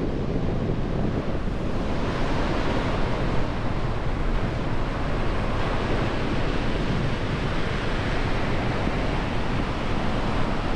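Ocean surf breaking and washing up the sand, mixed with strong wind buffeting the microphone: a steady, unbroken rush of noise that turns brighter and hissier about two seconds in.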